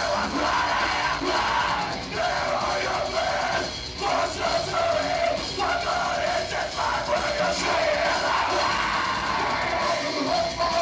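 A live heavy rock band playing loudly, with electric guitar, drums and keyboards.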